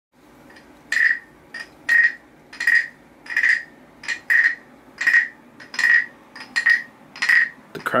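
Wooden frog guiro croaking as a stick is scraped along its ridged back, about eleven short rasping croaks at a steady pace of roughly one every 0.7 s.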